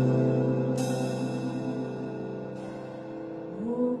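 A band's held chord on bass, piano and guitar rings out and slowly fades, with one cymbal crash about a second in. Near the end a voice sings a short rising "oh, mm".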